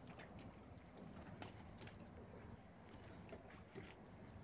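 Near silence: faint background hiss with a few small clicks.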